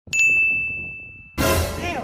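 A bell-like ding: one clear high tone struck once, ringing and fading away over about a second. About 1.4 seconds in, a sudden loud noisy burst follows.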